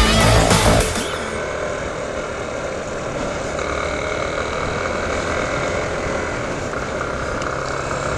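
Electronic music with a heavy beat cuts off about a second in, giving way to a Yamaha motorcycle's engine running steadily under way, mixed with wind rushing over the microphone.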